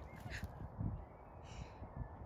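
A bird gives two short, harsh calls about a second apart, over a low rumble.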